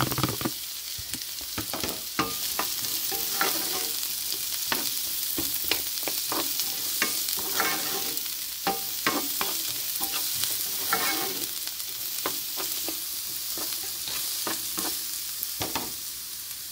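Chopped onion, garlic and ginger sizzling in hot olive oil in a textured stainless-steel frying pan, with a steady hiss. A wooden spatula scrapes and knocks against the pan over and over as the mixture is stirred.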